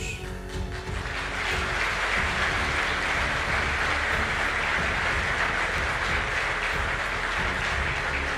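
Audience applauding in a large hall, swelling about a second in and then holding steady, over background music.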